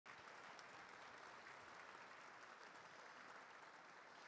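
Faint applause from an audience, a steady patter of many hands clapping.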